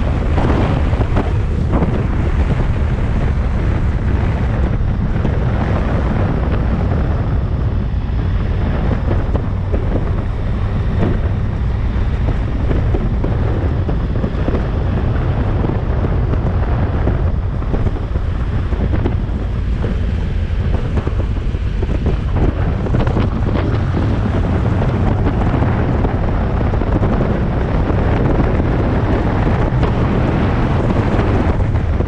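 Loud, steady wind noise on the microphone of a moving motorcycle, with the bike's engine and tyres running underneath at road speed.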